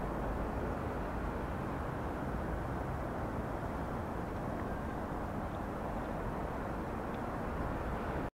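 Steady outdoor background rumble at night, a low, even noise without distinct events.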